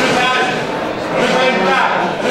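A cow mooing in the sale ring over the auctioneer's continuous selling chant.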